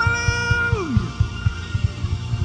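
Gospel worship band music: a held note slides up, holds, and falls away just under a second in, over a low, pulsing accompaniment.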